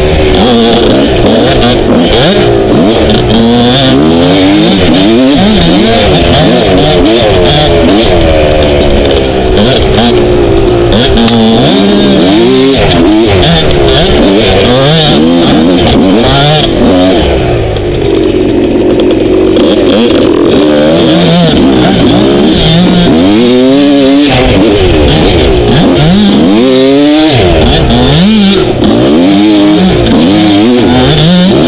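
Dirt bike engine revving up and down continually as the rider works the throttle along twisting woodland single-track, briefly holding a steadier note about two-thirds of the way through.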